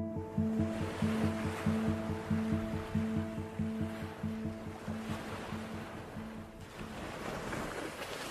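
Background music of a steady pulse of repeated chords, which stops about two-thirds of the way through. Ocean surf washes beneath it and carries on alone after the music ends.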